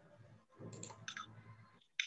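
Faint computer-mouse clicks over low room noise as an answer line is drawn on a shared screen: a few light clicks about a second in, then a sharper click near the end.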